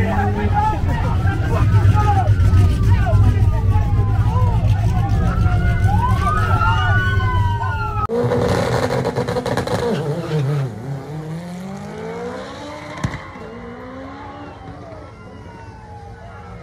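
Car engines idling with a steady low drone, a police siren wailing over it and crowd voices around. After a cut about halfway the sound drops: a car engine note rises as it accelerates, and a sharp knock comes near the end.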